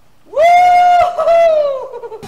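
A man's loud, high-pitched yell of excitement, held in two long notes with a short break between them, the second trailing down in pitch at the end.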